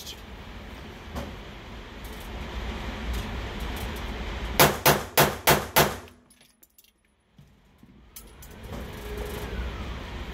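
Five 9mm pistol shots fired in quick succession, about a third of a second apart, from a Cosaint Arms COS21 with a chunk-ported slide, firing 147-grain Supervel rounds.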